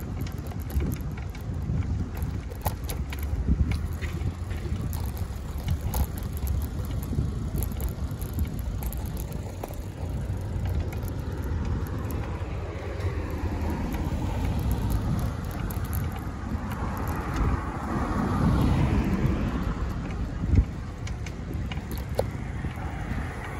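Rumble and rattling clicks of a bicycle ridden over a bumpy sidewalk. Road traffic swells past in the second half, loudest a few seconds before the end.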